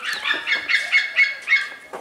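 A bird calling in a quick run of loud, high honks, about four a second.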